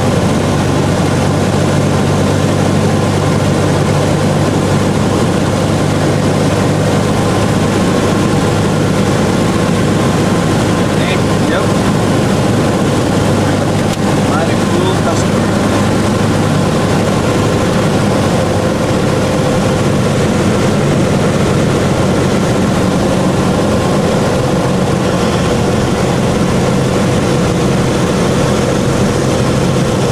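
Single-engine light aircraft's piston engine and propeller running with a steady drone during a landing approach; the balance of the low tones shifts slightly about midway as power settles.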